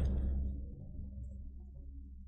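Quiet low steady hum, with a faint trailing sound fading away in the first half second; the screwdriver turning the chain adjuster makes no distinct sound.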